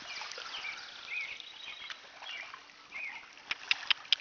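Small dog whining, a series of short, high squeaky whimpers in little groups, excited by a duck close by on the water; a few sharp clicks follow near the end.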